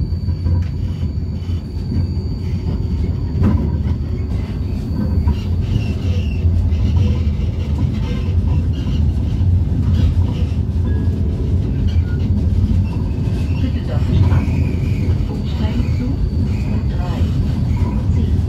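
Vienna tram running steadily, heard from inside the passenger car: a continuous low rumble of the car and its wheels on the rails.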